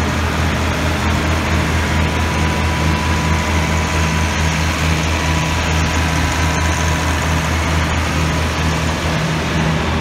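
Massey Ferguson 1105 tractor's six-cylinder Perkins diesel engine idling steadily, with a faint steady whine above the engine's low running note.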